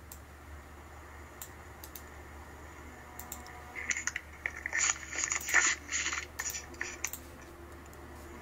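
Faint, irregular clicks and crackles, bunched together from about four to seven seconds in, over a steady low hum.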